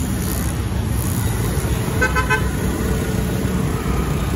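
Road traffic: motorcycle and scooter engines running past with a steady rumble, and a vehicle horn giving a few quick short toots about two seconds in.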